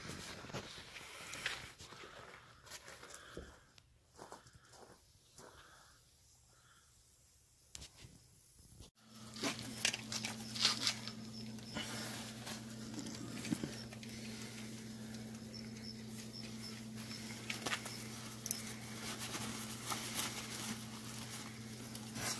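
Deployed car side-airbag fabric being handled and rustled, with scattered small clicks. After a cut about nine seconds in, a steady low hum runs under the handling.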